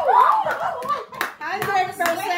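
A few people clapping in a small room, with voices calling out over the claps.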